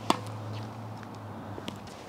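Tennis racket striking a ball once just after the start, a short sharp pop, with a fainter tick about a second and a half later. A steady low hum runs underneath.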